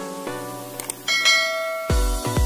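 Background music with plucked, ukulele-like notes, then a bright bell chime sound effect about halfway through that rings on. Near the end an electronic dance track with a heavy bass beat cuts in.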